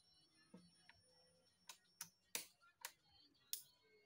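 Draughts pieces clicking against a wooden board and each other, about five sharp clacks over two seconds, as a player captures several of his opponent's pieces and gathers them up off the board.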